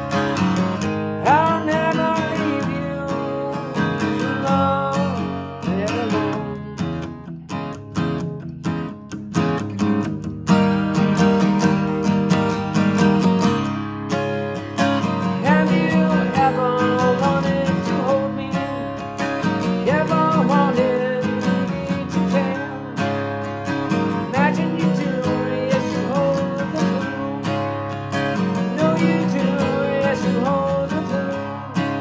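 Acoustic guitar strummed in a steady rhythm, an instrumental passage of a song. The strumming thins to quieter, choppier strokes for a few seconds, then comes back in full about ten seconds in.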